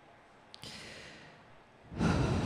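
A man breathing close into a handheld microphone during a pause in reading: a small mouth click about half a second in, then a soft exhale, with a much louder breath starting right at the end.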